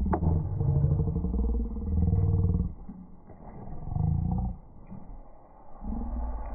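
Dairy heifers mooing: one long, low call, then a shorter one about three and a half seconds in.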